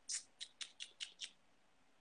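A quick run of about six faint, sharp clicks, roughly five a second, which stop a little over a second in.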